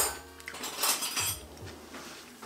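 Cutlery and dishes clinking at a dinner table: a short run of sharp clinks about a second in.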